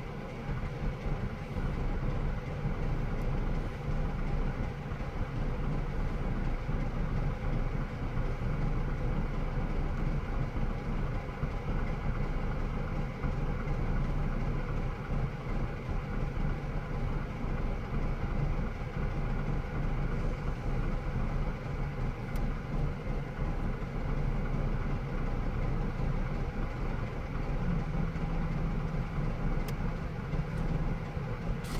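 Engines idling: a steady low rumble heard from inside a waiting car, its hum stepping up slightly in pitch near the end.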